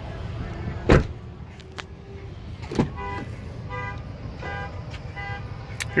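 Pickup truck cab doors being handled: a heavy door thud about a second in and a lighter thud near three seconds. After them come about four short, evenly pitched chime tones, roughly one every two-thirds of a second: the truck's door-open warning chime.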